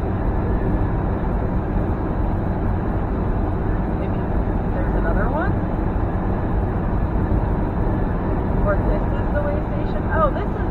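Steady road and engine noise inside a semi truck's cab at highway cruising speed. A couple of brief sliding sounds come about halfway through and again near the end.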